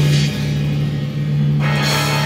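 Live rock band playing loud on drum kit and guitar: a low chord held ringing, with a cymbal crash near the end.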